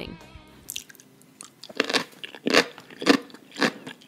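Close-miked ASMR chewing: crisp crunches about every half second, starting about two seconds in, from bites of yellow pickled radish (danmuji).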